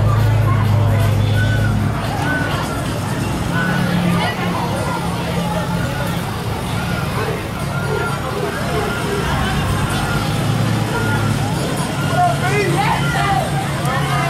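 Pickup truck engine running with a steady low hum as it tows a parade float slowly past, under overlapping chatter and children's voices from the crowd.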